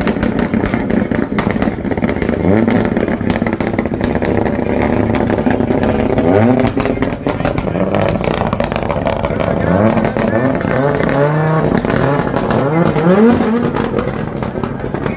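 Rally car engine being blipped as the car pulls away slowly, its pitch rising on each rev, a few times early and several in quick succession near the end.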